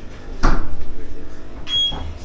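A knock about half a second in, followed by a short, high electronic beep near the end.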